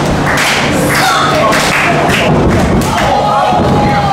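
Several dull thuds from the boards of a wrestling ring as the wrestlers move about in it, with short shouts from a small crowd.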